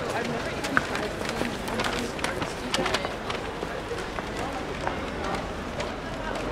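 Busy street ambience with people talking indistinctly and footsteps on the pavement, heard as irregular sharp clicks over a steady background hum.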